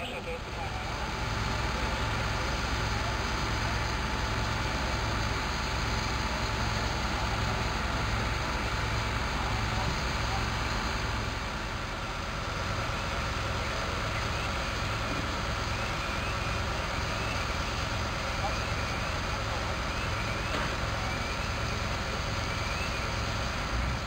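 Fire engines' engines running steadily at the fire scene, a constant low hum under an even noisy rush, with voices in the background.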